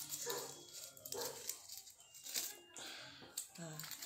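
Faint, broken speech and murmured voice sounds at low level, with a few small clicks.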